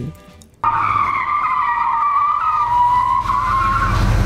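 Car tyres screeching as a car brakes hard to an emergency stop, played as a sound effect: one long, slightly wavering squeal beginning about half a second in, with a low rumble building toward the end, then cutting off suddenly.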